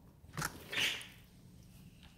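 Sliding glass door unlatched with a sharp click, then slid open with a brief rushing scrape just under a second in.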